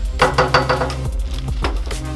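A few quick knuckle knocks on a metal-framed glass front door in the first second, over background music with a steady bass line.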